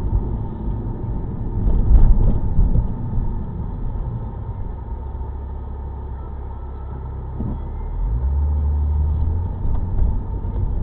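A car's engine and road rumble heard from inside the cabin. About eight seconds in, the low engine hum gets louder and higher as the car pulls away.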